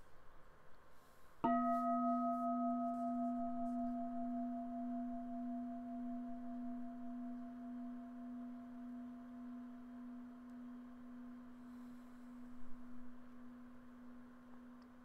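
A meditation bowl bell struck once about a second and a half in, then ringing with a low, steady tone and a few fainter higher overtones that die away first, fading slowly over the following twelve seconds.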